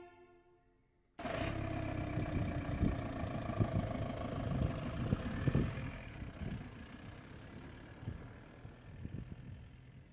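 A string quartet's final chord dies away into about a second of silence. Then a Volkswagen Golf hatchback's engine and tyres are heard as it drives off, the sound slowly fading as the car moves away.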